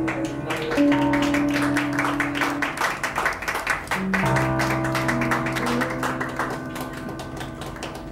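Live band playing: sustained electric guitar and keyboard chords over rapid, sharp percussive strokes. The music fades toward the end.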